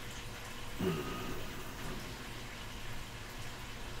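A pause in a man's talk: steady low background hiss and hum from the recording, with a brief faint hesitation sound in his voice about a second in.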